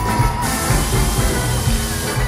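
Live band music with electric guitar, a held high note ending early on. About half a second in, a hiss rises over the music for about a second and a half, coinciding with stage CO2 jets firing.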